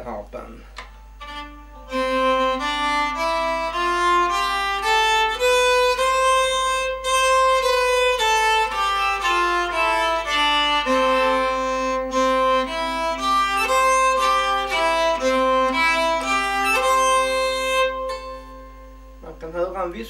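A nyckelharpa (Swedish keyed fiddle) bowed in a short melody over a held lower note. It starts about two seconds in and stops about two seconds before the end. The instrument is one the player built himself, with its bridge placed acoustically on the top's nodal lines.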